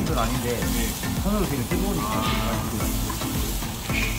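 Thick chunks of black-pork belly sizzling steadily on a hot perforated grill plate, with metal tongs turning the pieces.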